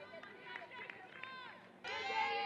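Voices calling out and chattering faintly across a softball field, with a louder voice starting just before the end.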